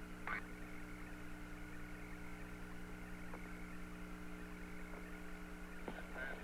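Open air-to-ground radio channel with no one talking: a steady hum and hiss from the communications link.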